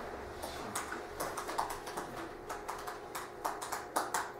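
Typing on a laptop keyboard: a quick, irregular run of clicking keystrokes.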